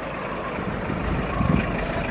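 Steady low rumble of road traffic, with wind buffeting the microphone.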